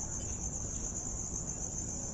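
Crickets trilling steadily, one continuous high-pitched tone over faint low background noise.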